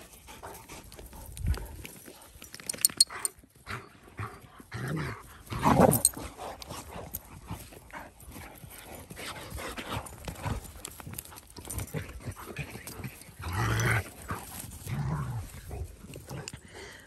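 Dalmatians play-fighting, giving several short dog vocalisations with clusters about five to six seconds in and again around fourteen seconds.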